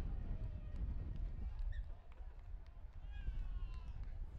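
Outdoor ambience of a rugby league game in play: distant players' voices calling out across the field over a steady low rumble, with one clearer call near the end.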